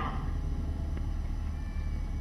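Steady low rumble of outdoor background noise picked up by the speech microphones, with a faint thin high tone appearing about halfway through.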